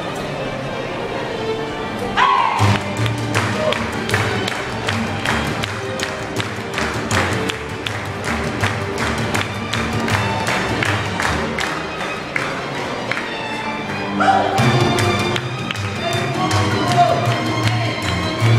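A live street ensemble with violin plays a fast piece; from about two seconds in, a steady, quick percussive beat drives the music, with a low bass line underneath.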